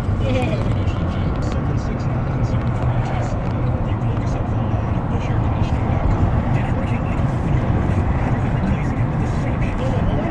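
Steady road and engine noise of a car driving, a continuous low rumble with no distinct events, and a faint voice underneath.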